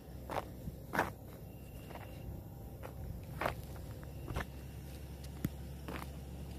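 Footsteps of a person walking, about seven uneven steps roughly a second apart, over a steady low hum.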